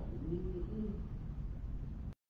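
Steady low room hum in a pause between speech, with a soft, brief murmur-like sound rising and falling in pitch about half a second in.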